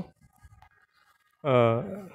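A man's lecturing voice in Hindi-Urdu breaks off for about a second and a half, leaving only a few faint small noises, then starts again near the end.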